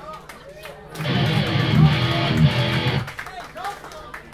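Band's electric guitar played loudly for about two seconds, starting about a second in and stopping suddenly, with voices before and after it.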